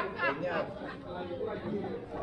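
Passers-by talking in a busy pedestrian street: one voice close by fades out in the first half-second, leaving softer overlapping chatter.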